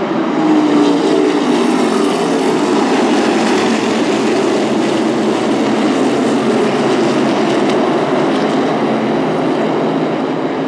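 A pack of NASCAR Whelen Modified Tour race cars running at speed, their V8 engines merging into one loud, dense, steady drone. It swells about half a second in as the field passes close.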